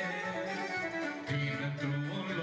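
Live band music without vocals: an instrumental introduction, a melody over a quick, steady beat, before the singing comes in.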